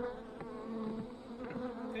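A colony of Italian honey bees humming steadily from inside an opened hive box.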